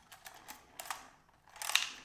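Faint, scattered light plastic clicks of a DJI Mini 3 Pro's folding propellers knocking against the drone as it is moved about: the propellers are unsecured and flop around loose. A short hiss comes near the end.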